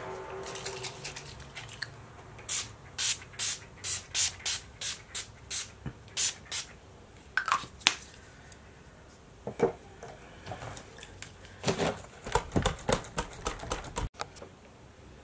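Urban Decay De-Slick setting spray being pump-misted, about ten quick spritzes at a steady pace. A few handling knocks follow, then another quick run of spritzes near the end.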